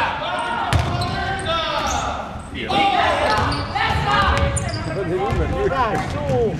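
Basketball game on a wooden gym court: the ball bouncing with short sharp knocks, amid players' and spectators' voices calling out, echoing in the hall.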